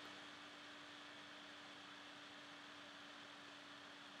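Near silence: room tone with a faint steady hiss and a thin low hum.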